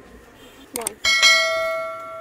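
Subscribe-button animation sound effect: a quick double mouse click about three quarters of a second in, then a single bell chime that rings out and fades over about a second and a half.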